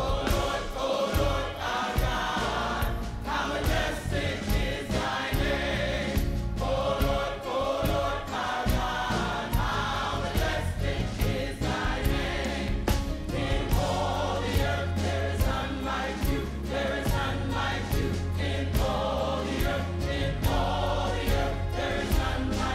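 Large gospel choir singing in full harmony over a band, with deep bass and a steady beat.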